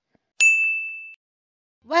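A single bright ding sound effect: one bell-like tone struck about half a second in, fading out in under a second.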